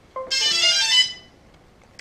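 DJI Phantom 2 Vision quadcopter's power-on start-up tones: a quick series of beeping notes lasting about a second.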